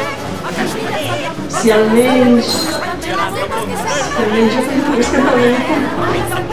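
A voice in drawn-out, sing-song phrases with long held pitches, over the chatter of other voices in the room.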